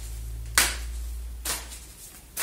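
A deck of tarot cards being shuffled by hand, with two short card slaps about a second apart.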